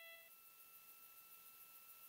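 Near silence: faint hiss with a thin, steady high tone from the broadcast feed.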